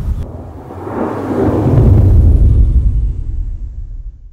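A swelling whoosh-and-rumble sound effect: a deep rumble with a breathy hiss that builds to a peak about two seconds in, then fades away.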